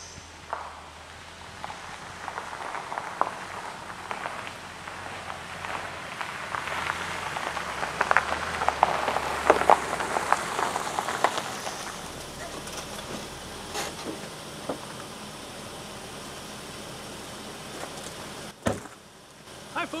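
Car tyres crunching over a gravel road as an SUV rolls slowly in: the crunching grows louder toward the middle and fades away as the car comes to a stop. A single sharp knock sounds near the end.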